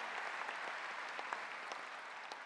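A large audience applauding, the clapping slowly dying down.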